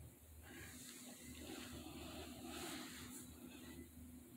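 Faint room tone: a low steady hum, with soft noise that swells and fades a couple of times.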